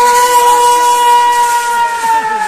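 A loud, long, high-pitched cry held on one steady note by a spectator, beginning to sag in pitch near the end, over a hiss of crowd noise.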